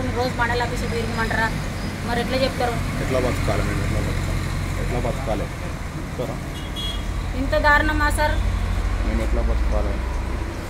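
A woman speaking Telugu in short bursts, over a steady low background rumble.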